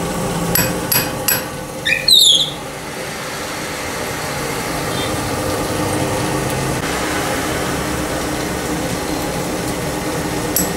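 Metal lathe running steadily with a camshaft turning in its chuck. Three sharp metallic taps come in the first second and a half, then a short screech about two seconds in.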